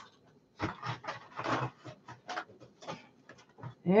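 Irregular rustling and light knocks of items being handled and turned around on a desk, a dozen or so short scuffs at uneven intervals.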